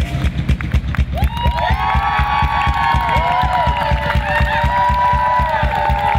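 A live rock band plays out the end of a song, with the drum kit pounding out rapid, even beats. From about a second in, held notes that bend up and down in pitch ride over the drums. A crowd cheers faintly underneath.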